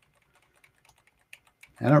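Computer keyboard keys pressed a few times, deleting text: faint, irregular clicks, several over two seconds.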